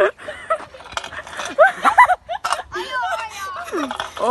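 Voices shouting and calling out with no clear words, including several short rising cries in the middle.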